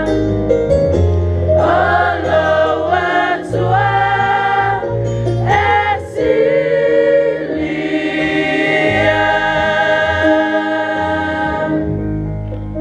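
A women's choir singing a Samoan offering hymn in harmony, with keyboard accompaniment. It ends on a long held chord.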